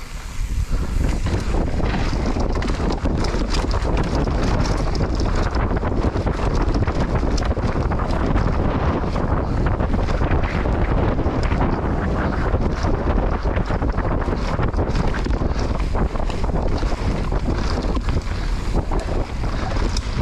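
Mountain bike descending a rough dirt downhill trail, with steady loud wind buffeting the camera's microphone over continuous tyre noise. Frequent short knocks and clatter come from the bike over rough ground.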